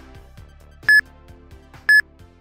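Interval timer app sounding the countdown beeps that close a Tabata work interval: short high beeps, one a second, over background music.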